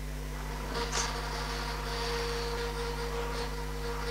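Festool Conturo KA65 portable edge bander running as it feeds edge banding around a tight concave curve: a low steady hum, with a faint higher whine joining in about a second in and a few light ticks.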